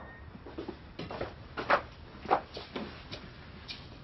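Soft, irregular rustles and light knocks of people moving about in a quiet room, about five in four seconds, over faint room hiss.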